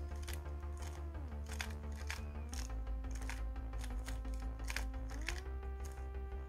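Quick, irregular clicking of a MoYu RS3M 2020 3x3 speed cube being turned through a Z perm algorithm, its layers snapping from move to move. Under it runs soft background music with sustained chords that change every second or two.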